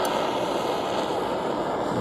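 Butane jet torch lighter running at full flame against an aluminium drink can: a steady, even jet hiss.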